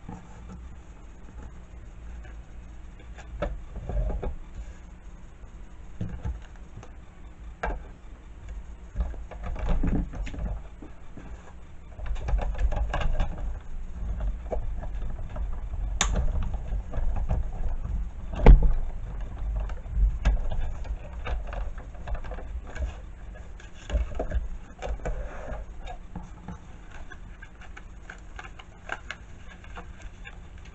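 Sizzix Big Shot hand-cranked die-cutting machine cutting a circle die through cardstock: a low grinding rumble as the plates are cranked through the rollers, for several seconds in the middle, with a sharp click and a heavier knock during it. Scattered handling clicks and knocks of paper and plates come before and after.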